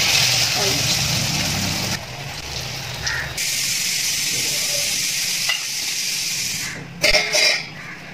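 Chana vadas deep-frying in hot oil: a steady sizzle that dips briefly about two seconds in, then runs on evenly until a short voice near the end.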